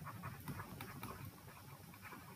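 Faint, soft ticks and scratches of a stylus writing on a tablet, over low room noise.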